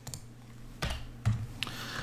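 A few keystrokes on a computer keyboard, short separate clicks about a second in, as a text title is retyped.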